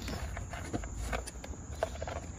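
Faint, scattered taps and rustles of hands handling plastic dash trim and a wiring harness, over a steady low rumble.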